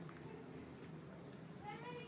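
A faint animal call near the end: a short, high cry that rises and falls in pitch, over a low steady hum.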